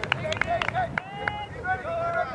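Several players shouting and calling to each other during a soccer match, overlapping raised voices, with a few short sharp knocks among them in the first second.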